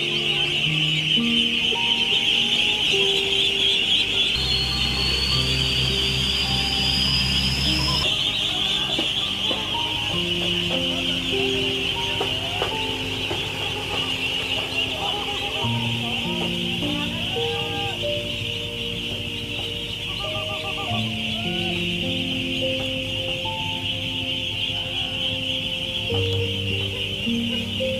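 A large flock of ducklings peeping all together, a dense, continuous chorus, under background music made of held notes.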